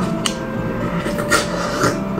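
Mouth sounds of jelly being sucked from a small plastic jelly cup: a few short wet clicks and slurps over a steady background hum.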